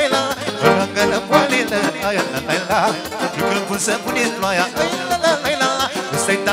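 Live wedding band playing brisk Romanian folk dance music for a hora, with an ornamented melody over a steady beat.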